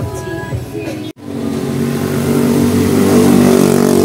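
Background music for about the first second, then, after a sudden cut, a motor vehicle's engine running steadily with a low, even hum that grows louder.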